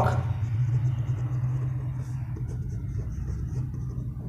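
A pen writing on paper, faint scratching strokes, over a steady low background rumble.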